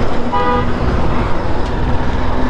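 Wind rush and engine noise of a Honda motorcycle being ridden on a highway, with one short horn toot lasting about a third of a second, a third of a second in.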